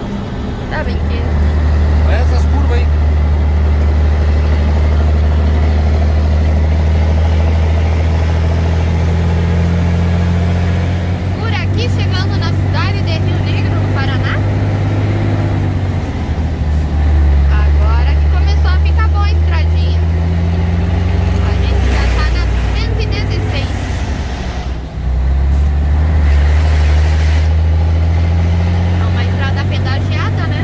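Scania 113H truck's inline-six diesel engine running under load, heard from inside the cab as a loud, steady low drone. The engine note climbs about a third of the way in, drops off about halfway, and dips briefly a few seconds before the end before picking up again.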